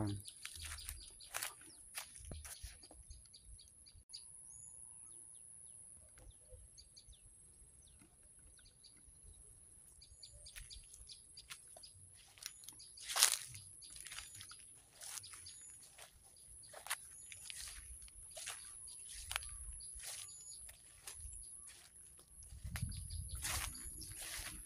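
Birds chirping in short repeated calls over a steady high-pitched hum, with scattered rustles and crunches of steps through grass and undergrowth. One louder crackle comes about halfway through.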